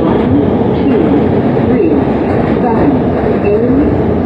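A New York City subway E train running at speed through the tunnel, heard from inside the car: a loud, steady rumble of wheels on rail, with tones that rise and fall over it.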